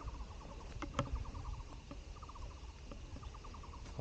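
Faint background of an animal calling in rapid, evenly pulsed trains, about ten pulses a second, over low wind rumble, with a couple of light knocks about a second in.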